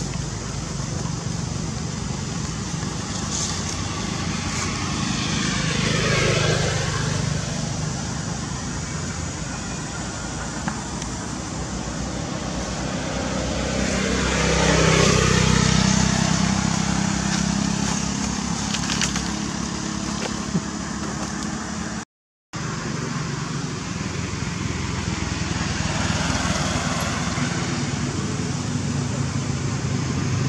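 Road traffic: steady engine and tyre noise, with vehicles passing close by, one swelling about six seconds in and another around fifteen seconds. The sound cuts out for a moment about six seconds before the end.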